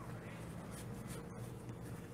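Faint scratching and rubbing from a whiteboard marker being handled, over a steady low room hum.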